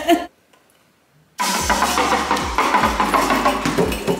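Background music with a drum beat. It drops out to near silence just after the start and comes back about a second and a half in.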